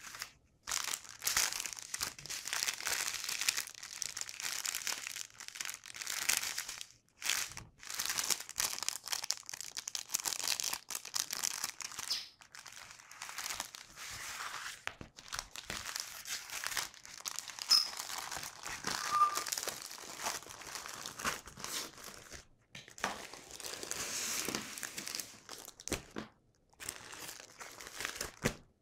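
Diamond painting canvases and their clear plastic film crinkling and rustling as they are handled and smoothed flat by hand. The crinkles come in irregular bursts with short pauses between them.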